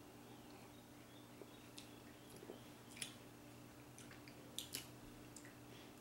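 Near silence: room tone with a few faint, short clicks and small mouth sounds of two people sipping and swallowing beer from glasses, the loudest click about three seconds in.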